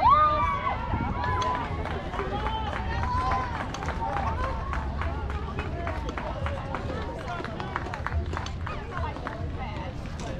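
High young voices cheering and chanting, loudest with a shout right at the start, over many sharp claps.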